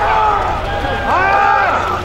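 Several men shouting over one another, with one long drawn-out shout about a second in, over a steady low rumble.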